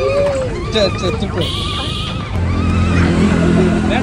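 Voices of adults and children talking and calling out at a busy roadside food stall. From about two seconds in, a steady low engine hum from a motor vehicle running close by joins them.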